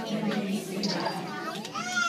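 A group of young children's voices chattering and calling out together in a gap in their song, with singing starting up again just before the end.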